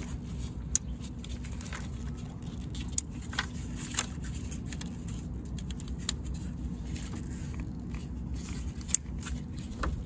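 Plastic electrical connectors being pushed onto fuel injectors by hand, with scattered sharp clicks as they seat and handling noise from the wiring harness, over a steady low hum.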